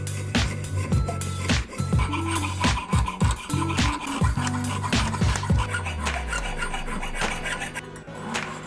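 Jeweler's saw blade cutting through a silver Morgan dollar, rasping in repeated back-and-forth strokes, over background music.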